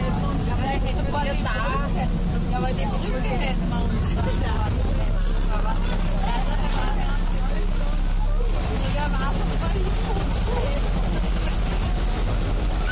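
Steady low drone of a boat's engine underway, with people talking indistinctly around it and a laugh right at the start.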